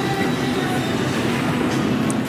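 Muffled pop music playing with a steady rumbling noise beneath it.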